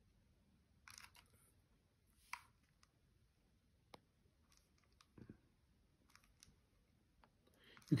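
Near silence with a few faint, short clicks and taps scattered through it, the small handling noises of hands working a probe against acupuncture needles.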